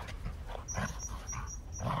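Two dogs play-fighting, with soft, irregular dog noises as they tussle and mouth at each other. A run of quick, high chirps sounds faintly behind them, about six a second.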